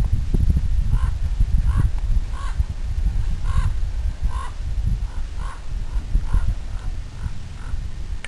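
A bird calling over and over, about a dozen short cawing calls a little under a second apart, over a steady low rumble.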